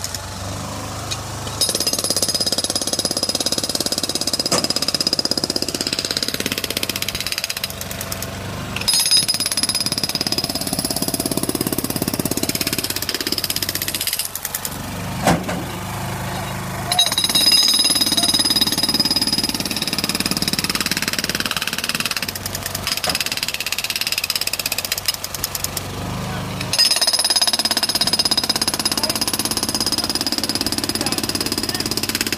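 Jackhammer breaking up an asphalt road surface. It hammers in runs of about five or six seconds, stopping briefly between them.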